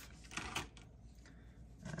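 Faint rustle of a plastic card wrapper being handled, with a short louder rustle about half a second in.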